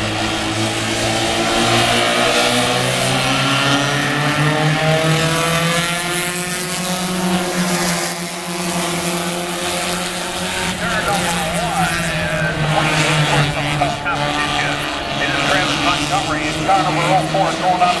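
A field of four-cylinder stock cars running together at an even, moderate pace, their engines making one blended steady drone that drifts slowly up and down in pitch.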